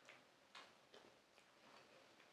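Faint chewing of pizza with soft mouth clicks, about one every half second, over near silence.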